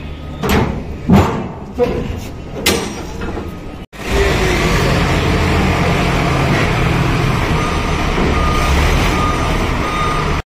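A few knocks and voices, then, after a cut, forklift engines run steadily and loudly. Short, faint beeps repeat from about the middle onward, like a reversing alarm.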